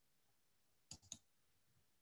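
Near silence, broken by two faint short clicks about a quarter second apart, a little less than a second in.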